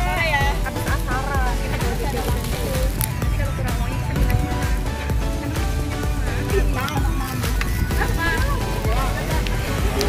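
Background music, with a voice briefly heard near the start.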